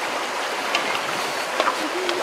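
Water boiling in a wok of octopus over a wood fire: a steady bubbling hiss, with a few sharp clicks.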